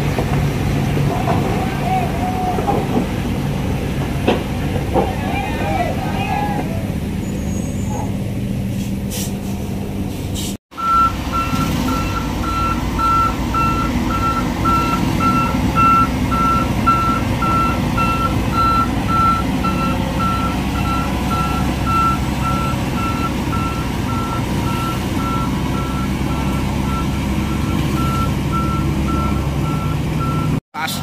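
Heavy truck diesel engine running with a steady low rumble. After a cut about a third of the way in, a truck's reversing alarm beeps steadily, about twice a second, over the engine.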